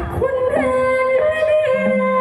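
A woman singing through a handheld microphone and PA, holding long notes that step up in pitch about halfway through and waver near the end, over amplified backing music.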